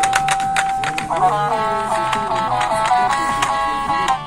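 Electronic baby toy playing a beeping tune: a steady electronic tone, a few clicks, then from about a second in a simple stepping melody of electronic notes.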